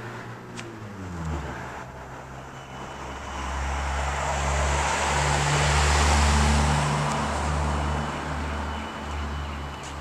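An SUV drives past close by, its engine hum and tyre noise swelling to a peak about six seconds in and then easing off.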